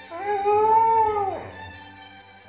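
Borzoi howling once over classical music: a single howl of about a second and a half that rises slightly, holds, then drops away in pitch.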